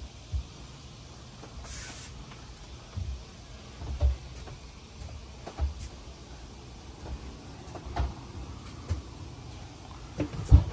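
Footsteps on a boat's deck, heard as dull, irregular thumps about every second or two, with a brief hiss about two seconds in, over a low steady background.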